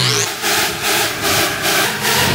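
Hardstyle music: a harsh, noisy synth texture pulsing about four times a second, with a rising sweep at the start over a held low chord.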